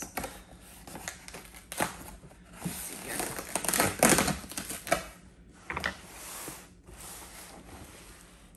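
Packing tape being picked at with fingernails and peeled off a cardboard box: irregular crinkling, scratching and ripping, loudest about three to four seconds in.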